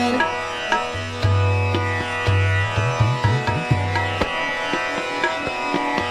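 Hindustani classical accompaniment in a gap between sung phrases: tabla keeping a medium-tempo jhaptaal, with bass-drum strokes that bend in pitch, over a steady drone and harmonium. A held sung note ends just at the start.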